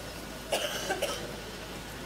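A person coughing: two short coughs about half a second apart.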